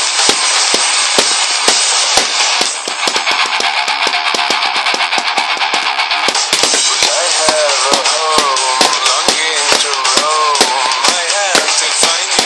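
Rapid drum hits played with sticks along to a loud rock song, the music dipping for a moment about three seconds in. Singing comes in over the drumming about seven seconds in.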